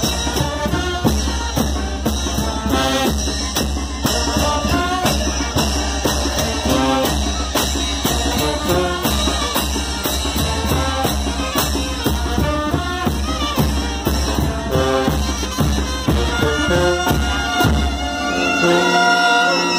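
Mexican brass band (banda de viento) playing chinelo dance music: brass over bass drum and clashing hand cymbals keeping a steady, bouncing beat.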